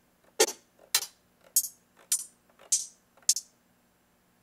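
Closed hi-hat samples auditioned one after another on a drum sampler: six short, dry hits about half a second apart, stopping about three and a half seconds in.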